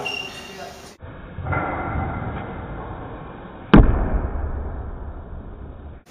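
One loud, sharp thud about two-thirds of the way in, the landing of a weighted box jump: an athlete holding dumbbells landing on a wooden plyometric box. The sound is muffled, and the thud trails off in a low rumble.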